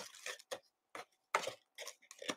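Hands handling a cardboard hobby box of trading card packs: a handful of light taps and clicks with faint rustling of cardboard and pack wrappers.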